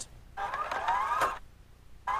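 Short electronic transition sound effect: several tones gliding upward together for about a second.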